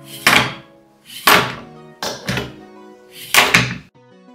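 Background music with heavy drum hits about once a second, four in all, over sustained chords.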